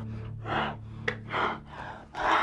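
Heavy breathing with several gasps, three or four breaths close together, over soft background music that fades out partway through.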